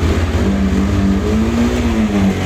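Motorcycle engine running steadily with a low, even pulse, having just been got going after repeated attempts to start it. About half a second in, a higher steady note joins it, rising slightly and then easing off.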